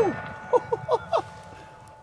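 A steel target plate ringing and fading after a 500 S&W Magnum revolver shot, then a man's four short chuckles about half a second in.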